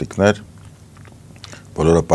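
Speech only: a man's voice says one short word, pauses for about a second with a few faint clicks, then resumes talking near the end.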